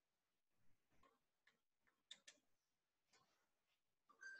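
Near silence with a few faint, scattered clicks, the clearest two about two seconds in.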